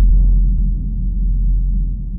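Deep cinematic rumble from a sudden low boom, a dark bass drone that slowly fades.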